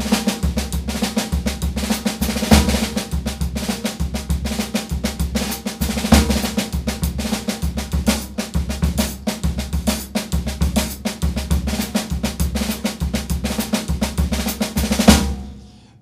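Drum kit playing a paso doble groove: a busy, steady snare pattern over the bass drum, with cymbal accents. It ends about fifteen seconds in on a final accented hit that rings out.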